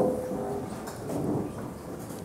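Low room noise of a lecture hall with a faint rumble between sentences of a talk, after a brief sharp sound right at the start.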